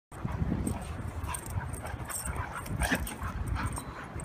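Labrador retrievers play-fighting, making dog noises amid irregular scuffling, with a louder burst about three seconds in.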